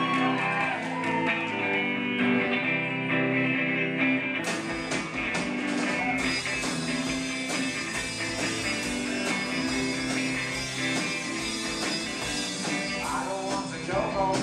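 Live rock band playing a song's opening: electric guitar and keyboard at first, with drums and cymbals coming in about five seconds in and the full band playing on.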